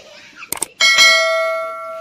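Subscribe-button animation sound effect: a quick double mouse click, then a bright notification-bell ding just before a second in that rings on and fades slowly.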